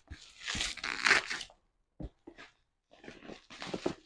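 Plastic bubble wrap being handled and crinkled while a package is unwrapped: a spell of crackling, a pause with a single sharp tap about halfway, then more crackling near the end.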